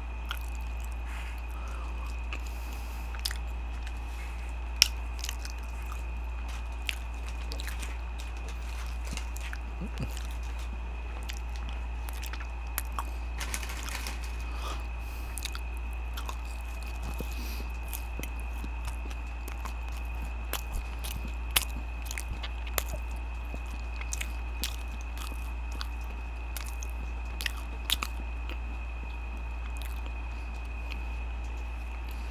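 Close-miked biting and chewing of fried chicken nuggets, with scattered sharp crunches and mouth clicks. Under it runs a steady low hum with a faint steady high whine.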